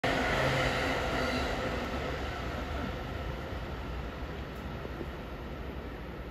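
Kode 165, an old electric car with nose-suspended traction motors, pulling away slowly with a transfer train behind it. Motor hum and rolling rumble, with a few steady tones loudest in the first second or two that then fade into a steady low rumble.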